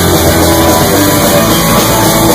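Punk rock band playing live, with electric guitar and drums: loud, dense and unbroken.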